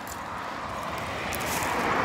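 A road vehicle approaching along the road, its tyre and engine noise growing steadily louder.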